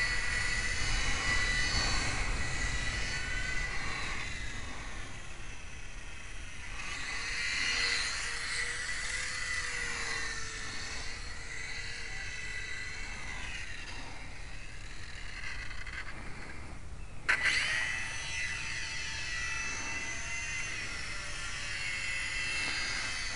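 Micro electric RC airplane's brushless motor and propeller whining in flight, the pitch wavering and bending as it flies around and past. Low wind rumble on the microphone underneath, and one sharp click late on.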